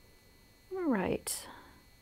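A woman's short wordless vocal sound with a falling pitch about a second in, followed at once by a brief breathy hiss.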